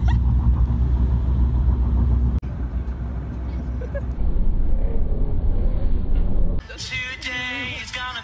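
Steady low rumble of a van's cabin on the road. It changes abruptly about two and a half seconds in, and music with singing takes over near the end.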